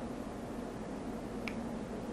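A single short, sharp click about one and a half seconds in, as of a computer mouse click moving the lecture slide on, over steady low room hum and microphone hiss.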